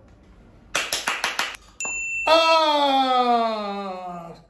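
A quick run of about five sharp clicks, then a short bright ding like a magic-trick sound effect, then a man's long drawn-out 'Faaa' shout that slowly falls in pitch.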